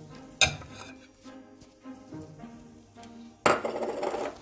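Background music, with a wooden spatula knocking once against a metal cooking pot about half a second in, then a louder scrape of the spatula in the pot near the end as cheese is stirred into the pasta.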